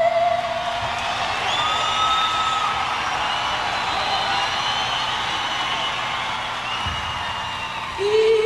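A female singer's belted high note, held on E5, ending about a second in, then a large audience cheering and whooping with several long whistles.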